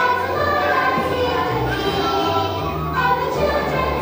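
A large group of young children singing together as a choir over instrumental accompaniment with a steady bass line.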